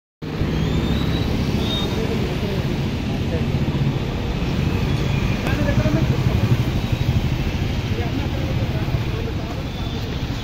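Steady low rumble of road traffic or engines, with indistinct voices of people talking in the background.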